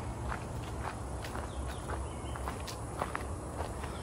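Footsteps of people walking on a dirt path strewn with dry leaves: light, irregular crunching steps, a few each second.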